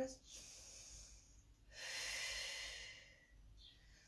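A woman breathing audibly while holding a yoga pose. First there is a faint breath, then about two seconds in a longer, clearer breath that lasts just over a second and fades out.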